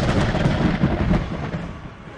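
A rushing, rumbling whoosh sound effect for something speeding past, loud at first and fading away over about two seconds.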